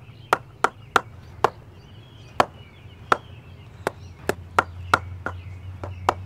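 A cricket bat being knocked in with a wooden bat mallet, the mallet striking the willow face of the blade to condition it: a run of sharp wooden knocks at an uneven pace, roughly two a second. A low steady hum rises underneath from about four seconds in.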